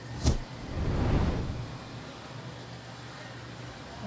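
A single sharp knock just after the start. Then a road vehicle passes, its rushing sound swelling and fading over about a second, over a steady low hum.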